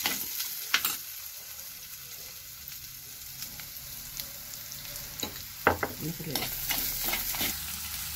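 Sliced shallots, curry leaves and dried red chillies sizzling in oil in a clay pot, stirred with a steel spoon that scrapes and knocks against the pot a few times. The sizzling grows louder for a couple of seconds in the second half.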